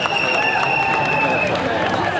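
Street parade crowd: many spectators' voices chattering together. A long, steady high-pitched tone sounds over them and cuts off about one and a half seconds in.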